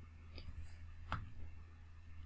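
Two faint taps of a stylus on a tablet screen, the second a little past a second in and sharper, over a low steady hum.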